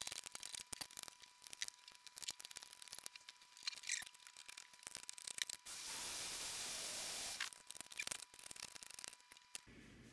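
Razor-blade scraper chipping and scratching shattered rear glass off an iPhone XS Max, a fast irregular run of small clicks and scrapes. About six seconds in a heat gun blows steadily for a couple of seconds to soften the adhesive, then the scraping picks up again.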